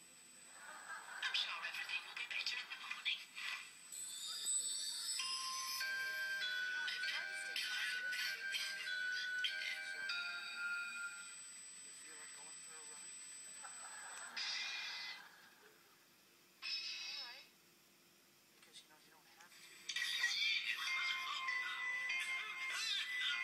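Sitcom soundtrack played from a television: music with held notes under the closing credits, mixed with bits of voice, dropping quieter for a few seconds past the middle before the music comes back near the end.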